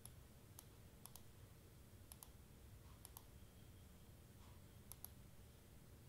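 Faint computer mouse clicks: a handful of single and quick double clicks spread over a few seconds, over a low steady room hum.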